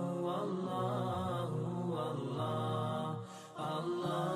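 Chanted vocal music with long held, wavering notes. It drops away briefly a little past three seconds in, then comes back.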